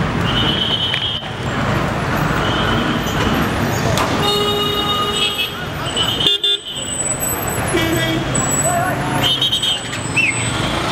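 Busy street noise of traffic and people's voices, with several short vehicle horn toots, the longest about four seconds in.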